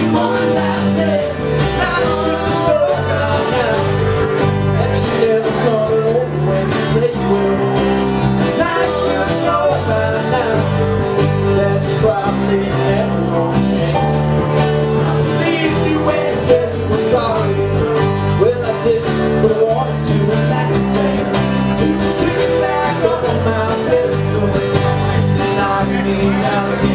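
Live band playing a country-rock song: strummed acoustic guitar, electric guitar, bass guitar and drums playing together steadily.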